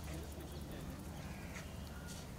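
A bird calling a few times over a steady low outdoor rumble.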